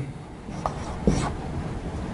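A marker writing on a whiteboard: a few faint, short strokes over low room noise.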